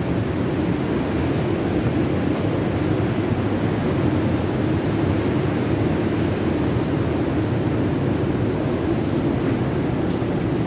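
Steady low roar of ocean surf.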